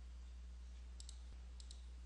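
Two faint computer mouse clicks, about two-thirds of a second apart, over a steady low hum.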